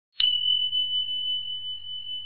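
A single high ding from an intro sound effect: struck sharply just after the start, it rings on as one clear note and slowly fades.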